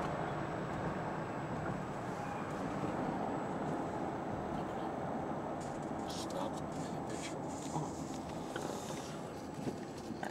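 Steady road noise of a car heard inside the cabin: tyres and engine running at an even level, with a few faint scattered clicks in the second half.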